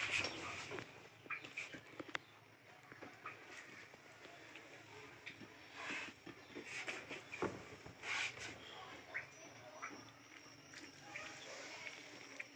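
Faint, scattered wet squishes, crackles and rustles of a honeycomb being squeezed by hand over a plastic strainer basket to press out the honey.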